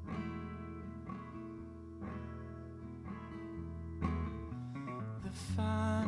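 Acoustic guitar played with the fingers. A chord rings out about once a second, then a quick run of notes about five seconds in leads into a louder chord near the end.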